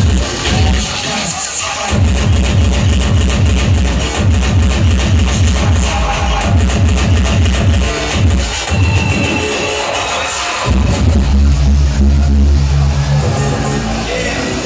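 Loud hardcore electronic dance music (speedcore) played over a festival sound system and picked up by a phone in the crowd. It has a rapid, pounding kick drum and heavy bass, and the kick drops out briefly a few times.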